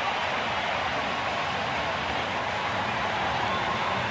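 Baseball stadium crowd noise, steady and even, right after a home-team double.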